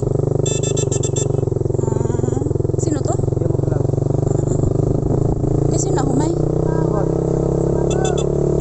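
Small Suzuki motorcycle engine running steadily while riding, heard from the saddle. A quick run of high beeps sounds shortly after the start and again near the end.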